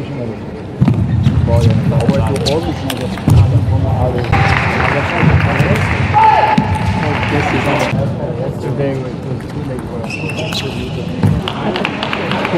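Table tennis ball clicking off rackets and the table during a rally. This is followed by a burst of audience applause and cheering lasting about three and a half seconds, then more sharp ball clicks as play resumes near the end.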